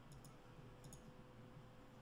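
Near silence: room tone with a faint steady hum and a few faint clicks in the first second.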